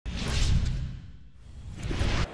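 Two whoosh sound effects with a deep low rumble beneath them, marking the animated wipes of a broadcast intro graphic. The first swells and fades within the first second; the second builds near the end.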